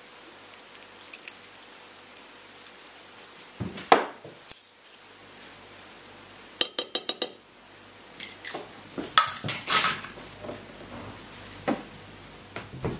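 Kitchen clatter of utensils and dishes: scattered knocks and clinks, with one loud knock about four seconds in, a quick run of about eight sharp clicks around the middle, and a burst of clattering a little later.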